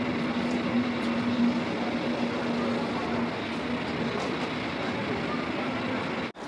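Railway platform ambience under a canopy: a steady wash of station noise with a low steady hum, likely from the waiting regional train, that fades out about four seconds in, and the murmur of travellers.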